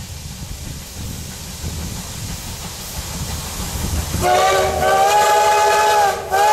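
CT273, a Kawasaki-built C57-type steam locomotive, approaching with a low rumble, then sounding its steam whistle in one long, loud blast starting about four seconds in, its pitch rising slightly soon after it begins.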